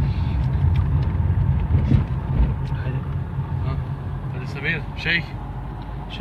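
Steady low rumble of a moving vehicle heard from inside its cabin, with a few faint spoken words about four and a half seconds in.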